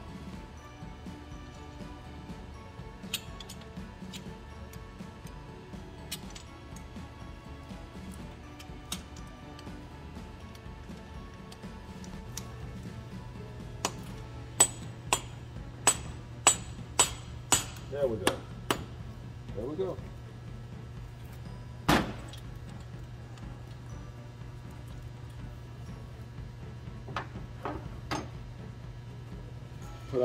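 Sharp metallic clinks of hand tools on a diesel engine's cylinder head while a fuel injector is reinstalled: a run of about eight clicks at roughly two a second about halfway through, then one louder clink a few seconds later, with a few lighter clinks scattered before. A faint background music bed runs underneath.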